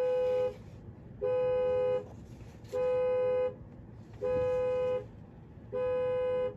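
Car's cabin warning chime beeping repeatedly: a steady mid-pitched beep about three-quarters of a second long, sounding five times at even intervals of about a second and a half.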